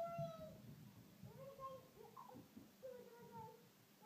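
Faint high-pitched voice of a small child making a few drawn-out, wordless sing-song notes, the first one long and the rest shorter.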